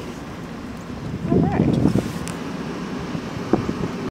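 Short wordless voice sounds, rising and falling in pitch, about a second and a half in, over steady wind noise on the microphone, with a sharp click near the end.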